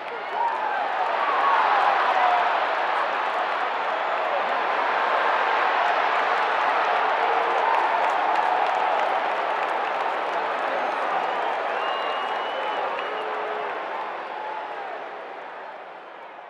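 Crowd noise: a dense din of many voices with scattered clapping, swelling over the first couple of seconds and fading near the end.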